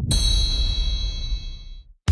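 A cartoon transition sound effect: a single bell-like ding, struck once and ringing out for nearly two seconds over a low rumble, then cutting off.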